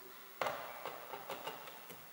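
A sharp tap about half a second in, then several lighter irregular ticks: a long screwdriver's metal shaft touching the bare inner door frame.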